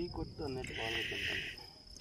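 Crickets chirping in a steady high trill, with a lower buzzing trill swelling for about a second midway. A faint voice is heard at the start.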